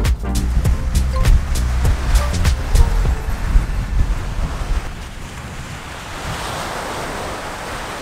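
Background music with a beat, fading out about halfway through into a steady rush of ocean surf and wind on the microphone.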